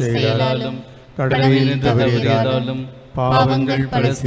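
A priest's voice intoning a Tamil prayer in a steady, chant-like recitation. It comes in three phrases with short pauses between them.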